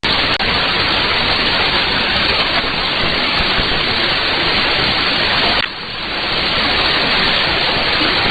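Shortwave static and hiss from an AM receiver tuned to the weak 17.760 MHz signal: a steady rushing noise with no clear programme audio. The noise dips for a moment a little before six seconds in, then builds back up.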